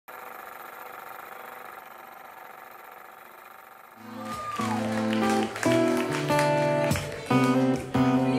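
Live band music. After a quieter steady first half, the band comes in about halfway through with held chords in short phrases separated by brief breaks, guitar among them.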